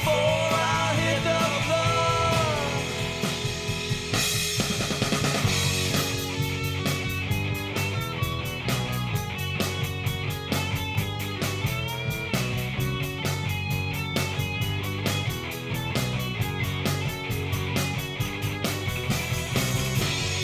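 Punk rock band playing an instrumental break: electric guitar, bass and drum kit with a steady driving beat.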